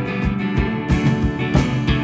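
Live acoustic guitar strummed over a drum kit keeping a steady rock beat, with no singing; cymbal hits come in about a second in.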